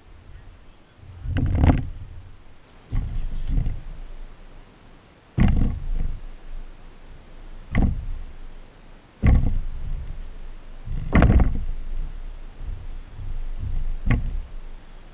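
Loose wooden planks being set down and shifted on log floor joists, knocking and thudding about seven times, one every second or two.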